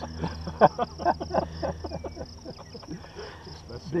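Men laughing in short, uneven bursts, with a steady high-pitched insect buzz, like crickets or grasshoppers, behind it.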